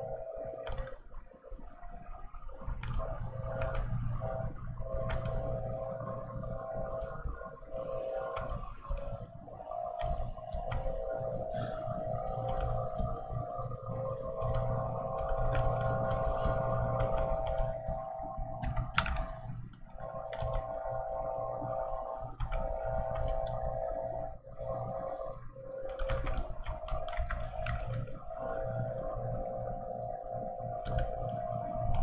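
A steady droning hum with several held tones, overlaid by scattered light clicks from working at a computer with a pen tablet and keyboard.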